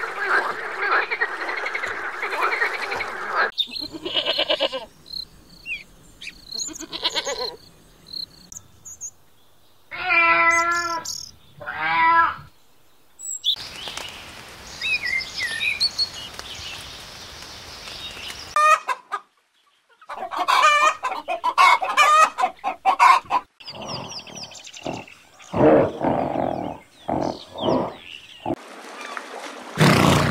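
A string of different animal calls in short separate takes, one kind after another, bird calls among them, with a brief silent break about two-thirds of the way through.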